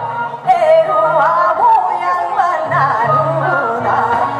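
A woman singing in Korean traditional gugak style through a microphone and stage speakers, her voice bending and wavering around held notes over backing music. The voice drops briefly about half a second in, then comes back strongly.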